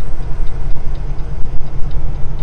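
Semi-truck diesel engine and road noise droning steadily inside the cab while driving, with the turn signal ticking faintly about twice a second.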